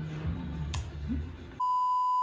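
A low hum, then about one and a half seconds in a steady, piercing beep cuts in: the single-pitch tone of a 'please stand by' television test card, used as a comic sound effect.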